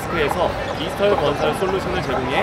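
Speech: a man talking in Korean.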